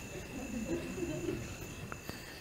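Crickets chirping, a steady high trill with a pulsing higher tone over it, and a faint low murmur of voices underneath.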